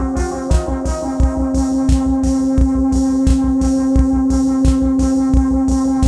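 Roland SH-101 synthesizer and a drum machine played through an Ace Tone EC-20 tape echo: a steady drum-machine beat of low thumps and ticks, about three a second, under synth notes that settle into one held tone about a second in.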